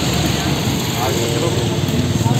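Busy outdoor street ambience: a steady rush of noise, likely passing traffic, with faint voices in the background.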